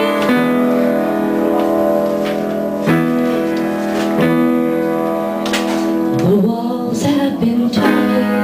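A small live band playing a slow, bluesy song with guitar and keyboard, mostly a held-chord instrumental passage with a few chord changes. Near the end there is a stretch of bending, sliding notes.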